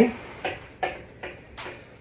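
Four light knocks, evenly spaced at about two or three a second.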